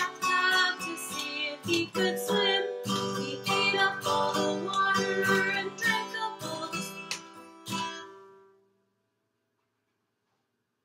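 A woman singing while strumming an acoustic guitar. The music fades out about eight seconds in and stops.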